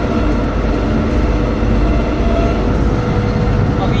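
Bizon BS combine harvester's diesel engine and drive running steadily under way, heard from inside the cab as a loud, even low noise with a few steady tones held through it.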